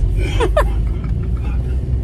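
Steady low rumble of a car's engine and road noise heard from inside the cabin while driving. A short vocal sound rises over it about half a second in.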